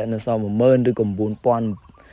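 A man's voice speaking, which stops near the end.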